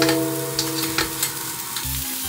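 Diced food sizzling in oil in a frying pan on an induction hob, stirred with a spatula that clicks and scrapes against the pan a few times. A ringing, bell-like tone of several pitches sounds at the start and fades out just before the end.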